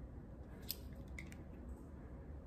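Faint handling noise from a stethoscope being turned in the hands: a few light clicks about halfway through, over a steady low hum.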